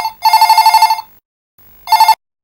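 Electronic telephone ringer trilling in fast-warbling bursts at one steady pitch: two rings close together, then a third ring starting near the end that cuts off short as the handset is picked up.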